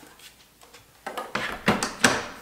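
Stainless-steel Thermomix mixing bowl being handled and set back into its base: a quiet start, then a few clunks and knocks in the second half, the loudest near the end.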